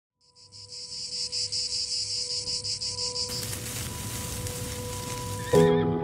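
Insects chirping in a high, steady pulse of about six chirps a second over a faint steady tone. About halfway through, the chirping gives way to a loud, even hiss, and near the end a piano chord comes in, the loudest sound.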